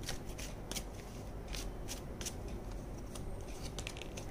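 A deck of tarot cards being shuffled by hand: a quiet, irregular run of soft card clicks and rustles.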